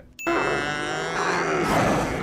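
A tauntaun's cry, a film creature sound effect: one long, strained animal call lasting nearly two seconds. It opens on a short bell-like ding, the sin-counter chime.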